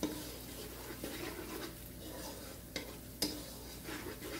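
Onions and ginger-garlic paste sizzling in hot oil in a pot while a spoon stirs them, with a couple of sharp knocks of the spoon against the pot near the end.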